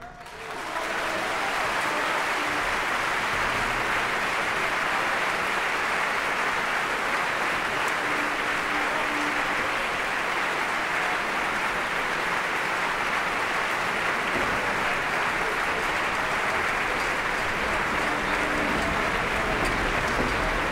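Theatre audience applauding at the end of an opera act. The applause swells within the first second and then holds steady.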